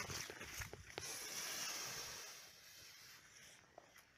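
Loose firecracker powder from an FP3 fuse firecracker burning open on paper: a few faint crackles, then a soft fizzing hiss that swells about a second in and fades out over the next two seconds. It burns without any bang.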